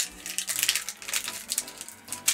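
Foil wrapper of a Pokémon TCG Shining Legends booster pack crinkling and crackling in irregular bursts as it is torn open by hand.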